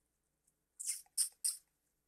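Silence for most of the first second, then three short, soft mouth clicks and breath sounds about a third of a second apart, the noises of a speaker's lips and tongue just before talking.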